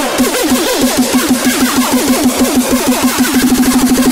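Uptempo hardcore music build-up: distorted, pitch-dropping kick drums repeating in a roll that speeds up steadily, from about six hits a second to about ten.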